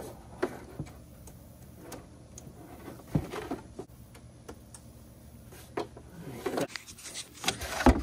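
Light scattered clicks, knocks and rustles of hands working a plastic wiring-harness connector into its mating plug behind a Jeep's fender liner, with a few sharper knocks, the loudest about three seconds in and just before the end.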